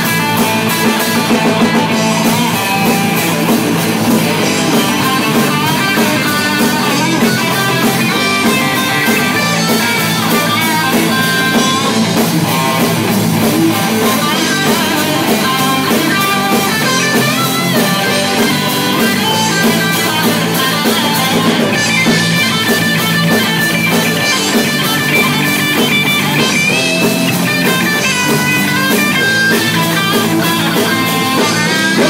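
Live rock band playing loudly and steadily: electric guitars over a drum kit.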